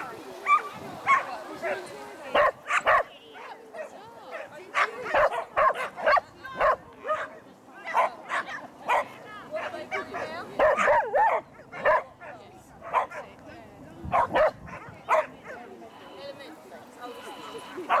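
Border collie barking over and over in short, sharp barks, in clusters of several a second with brief lulls, excited while running an agility course.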